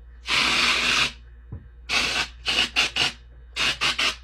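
Rasping strokes through the hair of a long synthetic wig: one long stroke, then a run of short, quick strokes.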